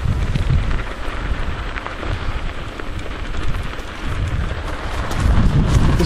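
Wind rushing over the microphone of a camera carried on a moving bike: a steady low rumbling noise with a few faint rattles from the rough trail.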